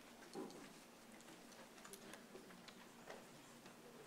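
Near silence: faint room tone with scattered small clicks and one soft, slightly louder sound about half a second in.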